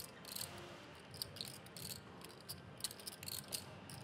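Poker chips clicking together as players handle and riffle their stacks: a run of faint, irregular small clicks.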